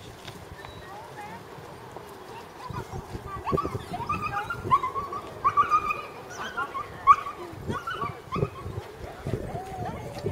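Small dog giving a run of short, high-pitched yips and whines, starting about three seconds in, as it bounces excitedly around its handler.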